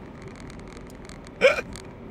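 Steady road and engine noise inside a moving car's cabin, with one short vocal burst from a man, like a stifled laugh, about one and a half seconds in.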